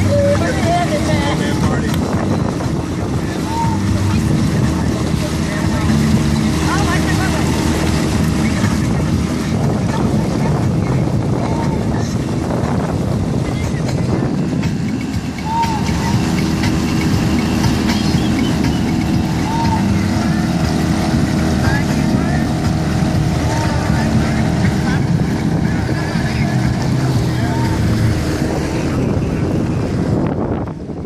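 Steady drone of motorboat engines underway, the small Mercury 15 hp outboard on the Lund running at speed close alongside together with the camera boat's own engine, over the rush of water and wind.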